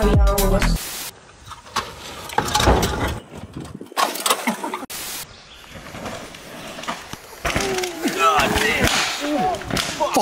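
Dance music stops abruptly about a second in. Then comes the sound of a downhill mountain bike rolling over a dirt trail, with spectators' voices near the end.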